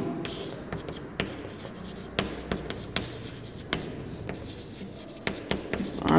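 Chalk writing on a blackboard: a string of short, irregular taps and scrapes as each stroke is made.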